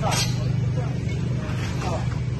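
A small engine running steadily, a constant low drone, with people talking over it.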